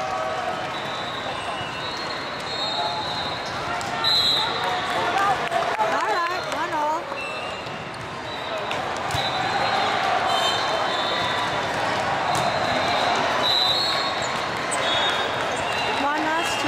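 Busy volleyball hall: many voices calling and chattering, with a shout a few seconds in, over scattered sharp knocks of volleyballs being hit and bouncing on courts around the hall.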